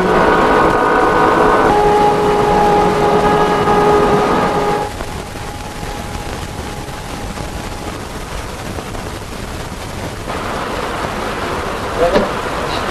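Film score of held orchestral string chords that change once about two seconds in and end about five seconds in, followed by a steady, toneless noise that swells a little near the end.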